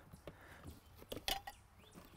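Faint, scattered clicks and light knocks as an audio amplifier and its wiring are handled.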